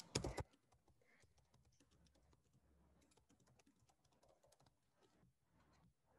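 Typing on a computer keyboard: a couple of louder clicks right at the start, then faint, scattered keystrokes.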